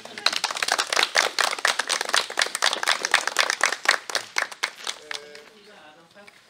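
A group of people applauding, with dense clapping that thins out and stops about five seconds in.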